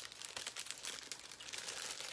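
Plastic earring packaging crinkling as it is handled: a continuous run of small crackles.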